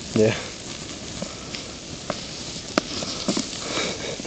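Plastic garden chair coated in silicone burning: a steady sizzling hiss with scattered sharp crackles and pops.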